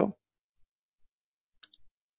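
Near silence on a voice recording, broken near the end by a few faint, short mouth clicks just before someone starts to speak.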